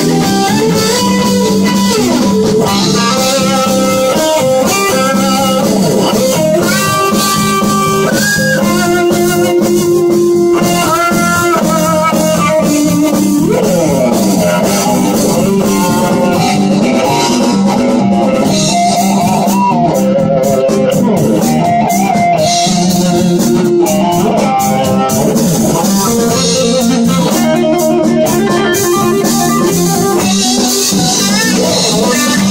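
Live rock band playing an instrumental: a Stratocaster-style electric guitar plays a lead solo of single notes with pitch bends and slides, over bass guitar and drums.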